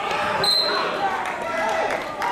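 Voices of spectators and team members talking in an echoing school gymnasium, with a brief high-pitched tone about half a second in.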